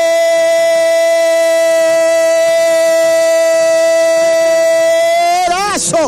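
A football radio commentator's long, drawn-out goal cry: one loud voice held on a single steady note for about six seconds, bending in pitch as it ends.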